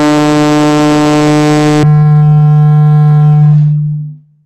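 A loud, steady held tone at one unchanging pitch, rich in overtones, lasting about four seconds. About two seconds in, its brightest upper overtones drop away abruptly, leaving a duller tone that stops shortly after.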